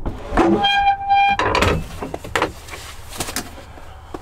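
Two short electronic beeps about a second in, then a series of metallic clunks and rattles from a trailer's metal door being opened.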